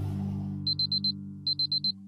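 Digital alarm clock beeping: two bursts of four quick high-pitched beeps about a second apart, over a sustained low note of background music.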